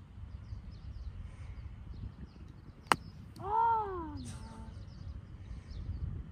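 A single sharp crack about halfway through, typical of a golf club striking a ball, followed at once by a short pitched call that rises and falls. Faint bird chirps run throughout.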